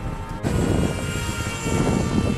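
Small 1806 brushless motor and propeller of a foam board flying wing whining steadily in flight overhead, getting louder about half a second in.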